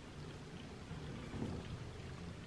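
Faint chewing of a jam-topped cracker over a steady low room rumble, with a small soft bump about a second and a half in.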